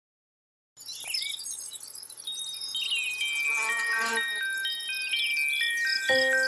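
Intro jingle starting suddenly about a second in: twittering chirps over a run of chime notes stepping down in pitch, growing louder and leading into music.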